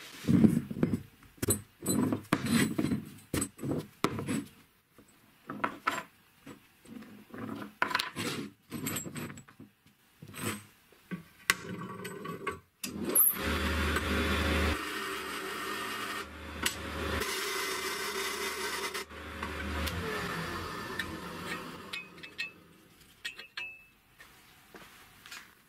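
Irregular knocks and rubs as a steel pipe section is handled on a wooden bench. Then, a little past the middle, an electric disc sander runs with a steady grinding rasp as the ends of the cut steel pipe pieces are pressed against its abrasive disc, in several stretches that stop near the end.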